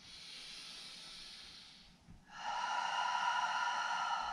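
A woman breathing audibly during a yoga pose change: a long, fainter breath of about two seconds, then, after a brief pause, a louder, hissing breath of about two seconds.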